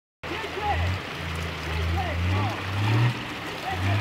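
Off-road pickup truck's engine revving in several surges while driving over rough grass, its pitch rising around the middle before dropping off and picking up again near the end.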